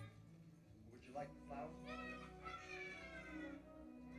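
Faint film soundtrack: steady background music with a high, wavering, voice-like cry in several short phrases that slide in pitch, starting about a second in.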